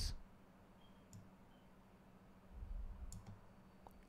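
Faint computer mouse clicks, once about a second in and again about three seconds in, while text is selected for copying, over a low steady hum.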